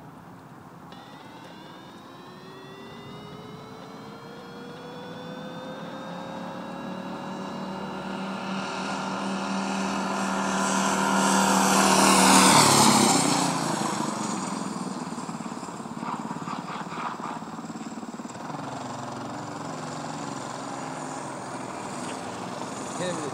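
Minibike's small engine running hard as it approaches, growing louder and rising in pitch, passing close by about twelve seconds in with a sudden drop in pitch, then fading as it rides away.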